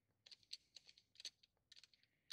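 Faint, irregular small clicks and scrapes as the knobs of a headrest speaker-mount bracket are tightened by hand onto the headrest posts.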